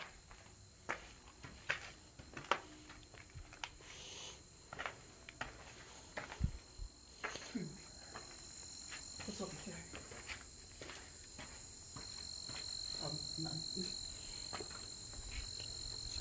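Steady high-pitched insect chorus from the field outside, growing louder about halfway through and again near the end. Scattered footsteps and knocks on the debris-strewn barn floor.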